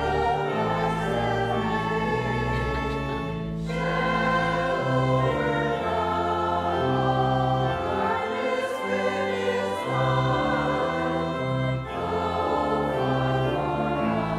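A hymn sung by choir and standing congregation over held organ notes, moving in slow steps; the sound dips briefly between phrases about four seconds and twelve seconds in.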